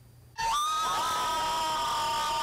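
Group of teenage girls screaming and cheering together in one long, steady, high-pitched shriek that starts about half a second in, after a brief hush.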